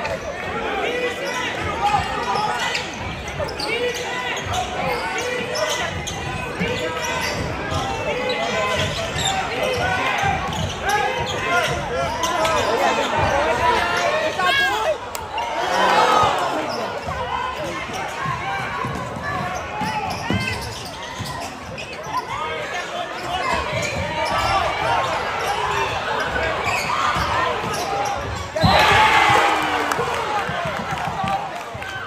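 Basketball dribbled on a hardwood gym floor under steady crowd chatter in an echoing gymnasium, with a sudden loud surge of crowd noise near the end.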